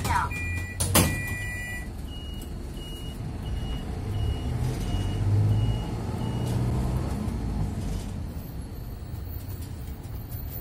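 Medium-size city bus pulling away from a stop, heard from inside the cabin: a sharp knock about a second in, then a short electronic beep repeating about twice a second for several seconds while the engine revs up as the bus accelerates.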